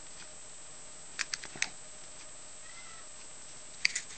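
Light clicks from handling a plastic super glue bottle and small components on a wooden bench: a quick cluster of three or four soft clicks about a second in and a sharper click near the end, over a faint steady hum.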